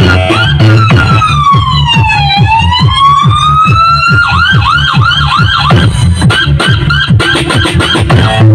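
Electronic dance music played very loud through a large street sound system's speaker stacks: a break with a siren-like sweep that falls and then rises, followed by a wobbling siren effect, over a fast run of bass kicks. The siren stops about six seconds in and the music fills out again.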